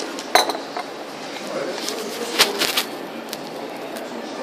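Ceramic cups and dishes clinking and knocking: one sharp clink about a third of a second in, and a quick cluster of three clinks around two and a half seconds, over steady room background noise.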